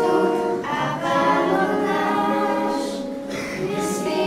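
Several young girls singing a song together in Slovak, with held notes, accompanied by a strummed acoustic guitar.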